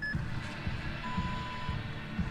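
Electronic start-countdown beeps: a short high beep, then about a second later a longer, lower beep as the start light turns green. Outdoor rumble, likely wind on the microphone, runs underneath.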